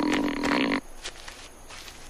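A short, buzzy sound effect on one steady pitch, lasting under a second and cutting off abruptly.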